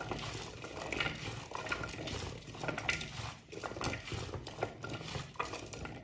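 Oiled butternut squash fries being tossed and mixed by hand in a clear bowl: an irregular run of wet shuffling and small knocks as the pieces move against each other and the bowl.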